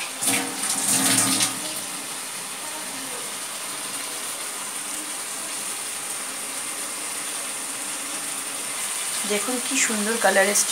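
Chicken bharta gravy with peas simmering and sizzling in a kadai over a gas flame, a steady bubbling hiss. There is a louder burst of noise in the first second or so.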